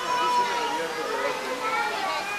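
Several people talking at once, children's voices among them, in overlapping chatter.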